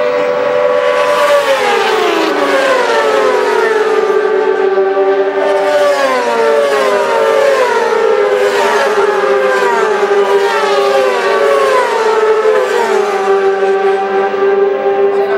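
Supersport racing motorcycles passing at speed one after another, each engine note falling in pitch as it goes by, about a dozen in turn over a steady engine drone.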